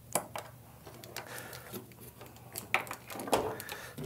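Scattered small clicks and rattles of electrical wires and plastic-sleeved spade connectors being handled and pushed onto terminals.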